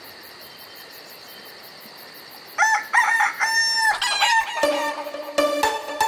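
A rooster crowing as a cartoon morning sound effect, about halfway through, over a faint steady high-pitched night hum. Upbeat music with a steady beat starts right after the crow.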